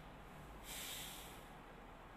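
A single faint breath through the nose, a hissy puff lasting a little under a second, starting about two-thirds of a second in, over low room hiss.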